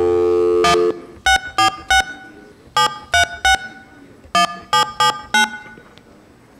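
Corded touch-tone desk telephone: a steady dial tone that stops about a second in, then ten short keypad tones in groups of three, three and four as a ten-digit phone number is dialled.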